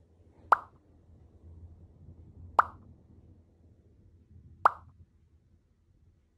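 Three short, bright plop sound effects, evenly spaced about two seconds apart, over a faint low hum.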